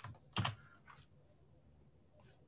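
A sharp computer click about half a second in, followed by a fainter click, then faint room tone.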